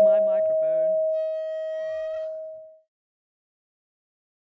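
A steady, high-pitched electronic tone holds at one pitch, with a brief cluster of higher tones and a rising glide joining it about a second in, then cuts off suddenly about three seconds in.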